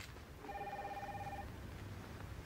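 An electronic telephone rings once, faintly, with a fast warbling trill lasting about a second, starting about half a second in.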